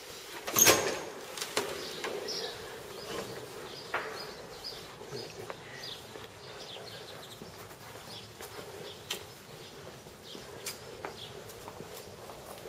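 A single loud knock just under a second in, then small birds chirping on and off.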